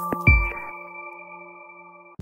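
Electronic logo-intro jingle ending: a last hit with a low thump about a quarter second in, then a chime-like chord of steady tones held and fading away.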